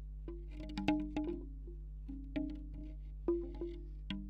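Bamboo wind chime's hollow tubes clacking together irregularly, two or three knocks a second. Each knock rings briefly at a low, hollow pitch. The tubes are picked up by contact microphones, and a steady low hum runs underneath.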